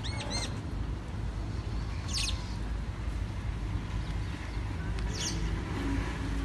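Birds chirping: a quick run of short chirps at the start, then two high falling calls about three seconds apart, over a steady low outdoor rumble.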